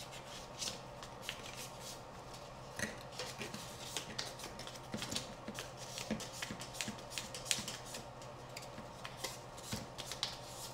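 Carbon fiber drone frame arm being hand-sanded with fine 2000-grit sandpaper: quick, irregular scratchy rubbing strokes, the last fine smoothing pass around the repaired edge. A low steady hum runs underneath.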